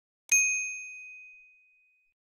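A single bright bell ding from the notification-bell icon of an animated subscribe button, the sound effect for turning notifications on; it strikes about a third of a second in and rings out, fading over about a second.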